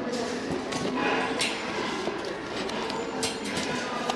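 Thrift-store room sound: faint background music and distant voices, with a few light clicks and rustles from handbags and wallets being handled in a wire shopping cart.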